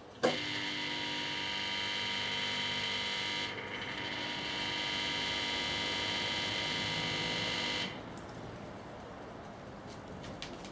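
Two microwave oven transformers switched on with a click, then a steady electrical buzz under load as they drive a fluorescent tube submerged in water. The buzz shifts about three and a half seconds in and cuts off just before eight seconds in, when the overvolted tube pops and goes out.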